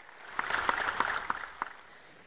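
Audience applause: a short round of clapping from a seated crowd that builds quickly and dies away after about a second and a half.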